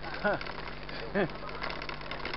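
Two short voiced sounds from a person, about a quarter second in and just after a second, over the steady rolling noise and fine rattling of a mountain bike riding a gravel dirt road.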